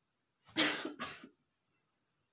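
A man coughing twice in quick succession, the two coughs about half a second apart.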